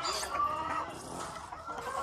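Hens clucking, with a drawn-out call in the first second that fades to quieter clucking.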